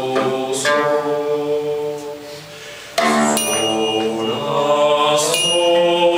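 Mixed choir singing a slow, chant-like medieval folk song in long held notes. The singing thins out and softens about two seconds in, then a new phrase comes in strongly, all voices together, about three seconds in.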